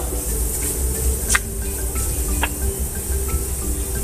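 Soft background music over onions sizzling in a stainless-steel pot, with a wooden spatula knocking against the pot twice while stirring.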